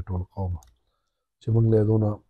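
A man speaking, with a pause of near silence lasting under a second in the middle.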